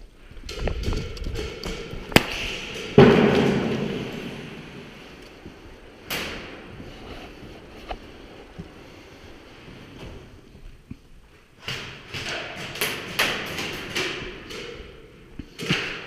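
An airsoft grenade going off with a loud bang about three seconds in, echoing and dying away over a couple of seconds in a large concrete hall, after a sharp crack just before it. Scattered sharp cracks follow, with a quick cluster of them a few seconds before the end.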